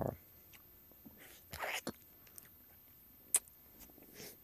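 Faint mouth sounds of a person eating a sour lemon: a few short, soft breaths or lip smacks, and one sharp click a little past three seconds in.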